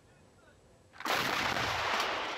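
Towed field artillery firing about a second in: a sudden loud blast whose noise carries on for well over a second.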